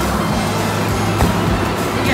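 Pickup truck engine running steadily, with background music over it.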